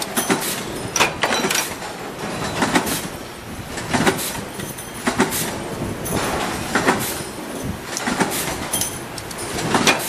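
Stamping presses in a metal workshop: about ten sharp metallic clanks at uneven intervals, roughly one a second, over a steady machine din.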